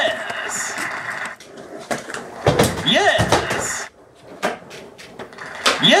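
Skateboard wheels rolling on pavement with a few sharp clacks of the board, under a voice shouting "Yes!" at the start, about halfway and again at the end.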